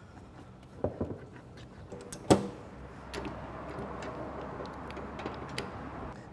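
Hand packing ground sausage meat into a stainless steel LEM sausage stuffer canister, with a few sharp knocks against the metal, the loudest about two and a half seconds in. A low steady background noise follows in the second half.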